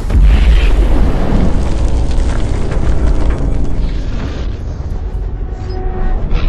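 Slowed-down 12-gauge shotgun blast: a deep boom right at the start that rumbles on and slowly fades over several seconds.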